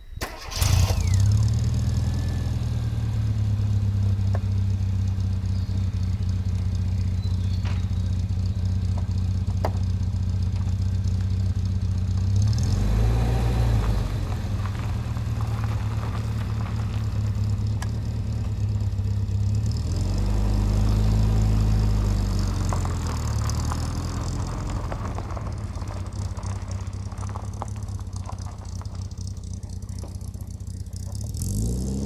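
Rover Mini's A-series four-cylinder engine starting about half a second in, then idling steadily. Its note changes briefly twice, near the middle and about two-thirds of the way through.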